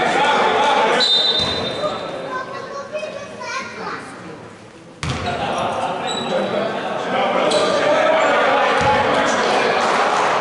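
A basketball bounced on a hardwood court in a large, echoing sports hall, among players' voices. The sound fades about a second in and cuts back in abruptly about halfway through.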